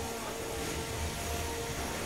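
Spinning weapons of 3 lb combat robots, an undercutter and a drum, whining steadily over a noisy background, with a second, higher whine joining about halfway.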